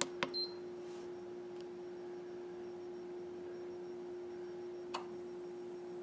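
Push-button click of a Go Power remote on/off switch as the inverter is switched back on, with a second click just after and a short high beep. A steady hum runs underneath, and a small click comes about five seconds in.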